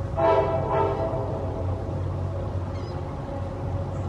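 Steady low hum of a model railroad show hall, broken about a quarter second in by a short two-part horn-like tone.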